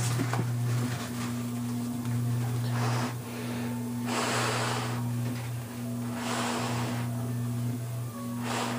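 Paint spray gun hissing in three short bursts of about a second each, laying on a tack coat of waterborne base color, over a steady electric hum.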